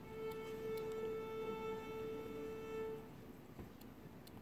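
A single orchestral instrument holding one steady A for about three seconds, then stopping: the tuning note sounded before the concerto starts.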